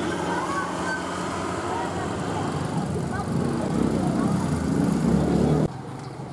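A steady low rumble with faint voices mixed in. It grows louder in the second half, then cuts off suddenly near the end.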